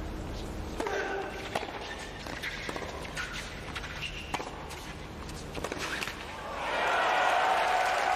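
Tennis ball being struck by rackets and bouncing during a doubles point: a series of sharp pops. Near the end, crowd applause and cheering swell up.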